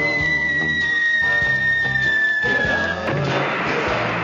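Falling-bomb sound effect: a long whistle sliding slowly down in pitch over band music, cut off about three seconds in by the crash of an explosion.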